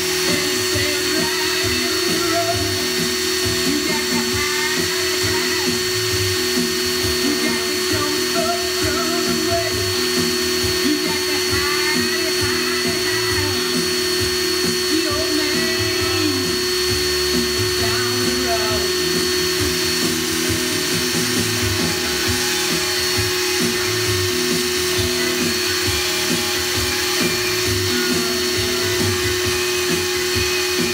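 Cordless drill running steadily on high with a constant whine, spinning the channel-selector encoder shaft of a Stryker CB radio in an endurance test.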